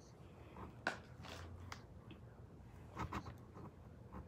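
Faint clicks and handling noise from a plastic lipstick tube being turned over in the hands: one sharp click about a second in and a quick cluster of clicks around three seconds, over a low steady room hum.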